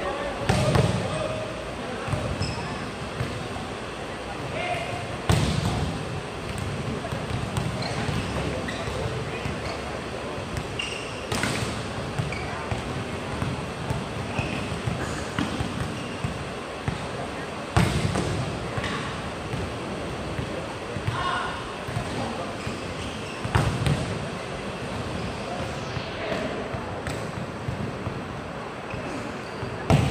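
Volleyballs being spiked in warm-up: five loud, sharp smacks of hand on ball and ball on court, roughly every six seconds, with lighter hits between, ringing in a large sports hall over crowd chatter.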